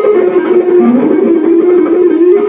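Electric guitar played live through an amplifier: a melody of held notes that steps down in pitch about a second in, then climbs back.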